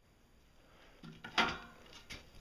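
Quiet background with one short clunk about a second and a half in, fading away quickly.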